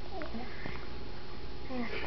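A toddler making two short wordless vocal sounds, one just after the start and a longer one near the end, with a faint click between them.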